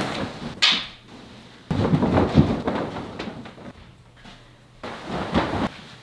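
A duvet being shaken out and spread over a bed: the fabric rustles and swishes in several bursts, the longest and loudest about two seconds in, with a shorter one near the end.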